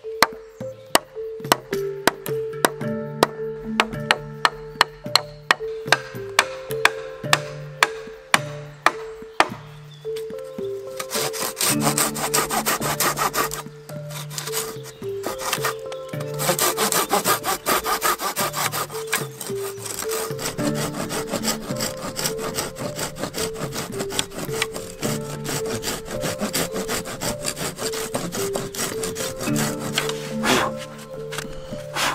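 Sharp knocks on wood, about two a second, for the first ten seconds or so, then a hand saw cutting across a fresh larch pole in quick back-and-forth strokes, rasping through the wood as it cuts the sides of a dovetail socket for a ladder step. Background music runs underneath.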